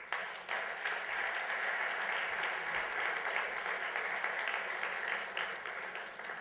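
Audience applauding: many hands clapping in a steady patter that eases slightly near the end.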